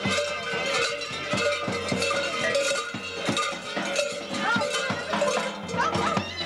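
Heavy bells worn by Surva mummers (survakari) clanging as they jump and dance, a dense, irregular clatter of many bells ringing at once.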